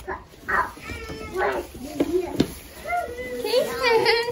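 Goat kids bleating in several short calls that bend in pitch.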